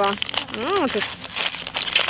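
Plastic ice-pop wrapper crinkling as it is pulled and torn open, densest in the second half. A brief voiced sound comes just before it.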